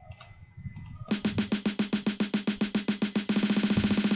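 Electronic snare roll played back from an FL Studio pattern. The hits start about a second in at roughly ten per second and speed up into a fast roll near the end. The pitch stays flat throughout because the pitch automation has been removed.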